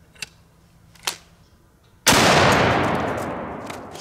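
Two small clicks, then about two seconds in a single shot from a double-barrel .500 Nitro Express elephant rifle: a sharp, very loud report that rings out and dies away over about two seconds.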